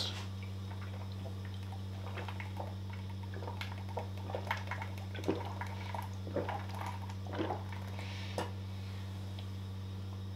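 A person chugging a protein shake from a plastic shaker bottle: soft, irregular gulping and liquid sounds over several seconds, over a steady low hum.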